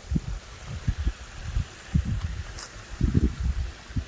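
Small rock waterfall pouring into a garden koi pond, a steady watery rush, under irregular low thumps and rumbles close to the microphone.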